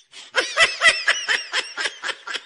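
A person laughing in a quick run of short, high-pitched "ha"s, about five a second, starting a moment in and growing fainter toward the end.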